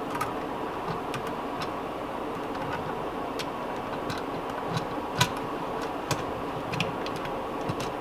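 Scattered light clicks and taps of hands handling wires and a wire connector at a wall switch box, over a steady hiss of room noise.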